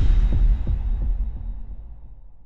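Cinematic sound effect from an animated logo intro: a deep bass boom with a few low thuds, its rumble fading away steadily.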